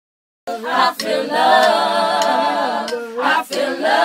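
Voices singing a cappella, sustained notes with vibrato, starting about half a second in after a moment of silence, with a brief break near the end.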